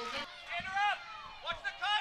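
Faint voices: a few short spoken phrases or calls.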